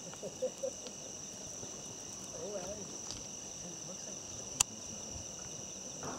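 Steady high-pitched chorus of night insects, crickets, trilling without a break, with one sharp click about four and a half seconds in.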